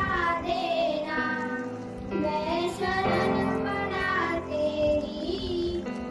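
Young girls singing a song, with long held and gliding notes in a steady melody.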